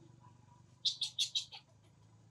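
Five shrill chirps in quick succession, about a second in, over faint background hum.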